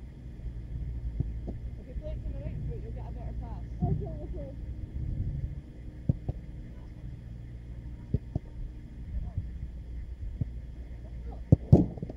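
Football being kicked and caught during goalkeeper drills: scattered single thuds of the ball being struck, then a loud quick cluster of thumps near the end as a keeper dives onto the turf to save. A steady low rumble runs underneath.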